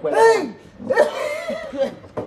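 A man's voice in two loud, drawn-out vocal outbursts whose pitch swoops up and down, the first right at the start and the second about a second in.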